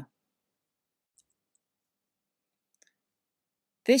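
Near silence in a pause of narration, broken only by two faint ticks, one about a second in and one near three seconds.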